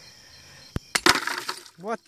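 Glass beer bottle blowing out: a faint tick, then about a second in a single loud crack of breaking glass with a short noisy rattle after it, about half a second long.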